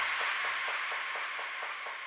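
The fading tail of an electro dance track after the beat stops: a hiss of noise slowly dying away, with faint, quick, evenly spaced echo pulses underneath.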